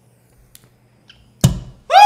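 A peeled hard-boiled egg pops through the neck of a glass bottle with a single sudden thunk about one and a half seconds in. Right at the end a loud pitched sound begins, sliding downward.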